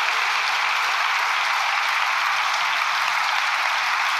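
Members of parliament applauding in a large chamber: steady, dense clapping at an even level.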